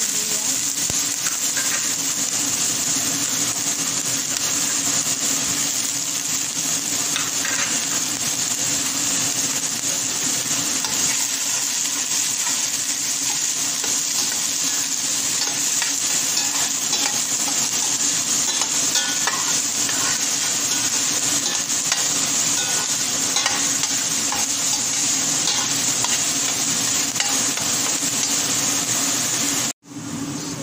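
Chopped garlic and onion sizzling steadily in hot oil in a stainless steel pot, stirred with a utensil that knocks lightly against the pot now and then.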